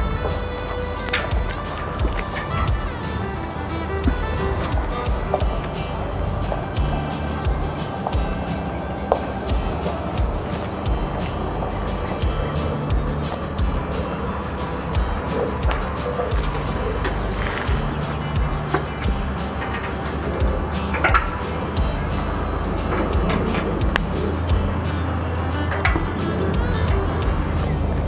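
Background music with low bass notes that change in steps, and a few sharp light clicks scattered through it.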